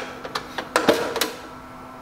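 A few short plastic clicks and knocks as the powdered chocolate canister on top of a Melitta XT4 coffee machine is handled and its lid worked open, over a faint steady hum.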